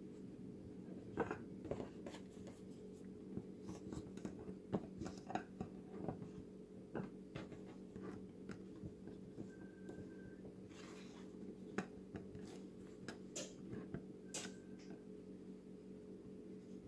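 Soft, irregular taps, pats and light knocks of hands handling rolled pie pastry and a pie pan on a floured countertop, over a steady low hum.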